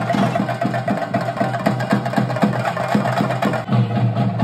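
Chenda drums of a Theyyam performance beaten with sticks in a fast, even rhythm of quick strokes.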